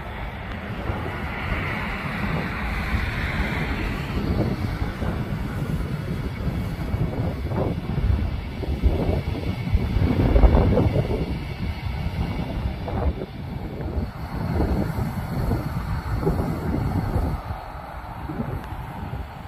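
Diesel locomotive idling, with wind buffeting the microphone in gusts, loudest about ten seconds in.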